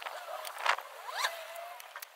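Card and double-sided tape being handled and pressed together by hand: a brief rasp, like tape peeling, about two-thirds of a second in, then a short rising squeak a little after a second.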